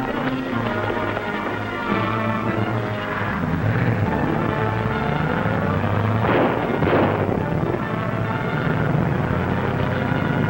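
Dramatic orchestral film-score music from a 1930s serial soundtrack, with two short bursts of noise about six and seven seconds in.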